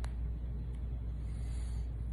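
A steady low background rumble, with a single short click right at the start.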